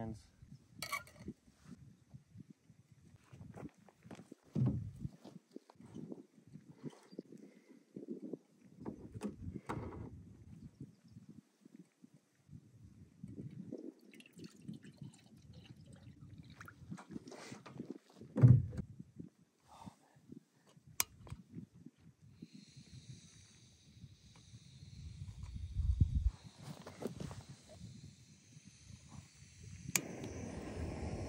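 Handling knocks around a camp pot and a Coleman canister stove, with water poured from a spouted plastic jug into the pot around the middle and a loud knock soon after. From about 22 seconds in, a steady high hiss of gas from the stove's burner as its valve is opened for lighting, with a low gust of wind on the microphone.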